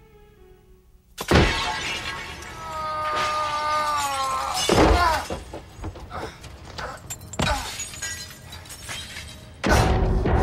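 Glass shattering in a sudden loud crash about a second in, then further crashes and falling debris, over dramatic film music.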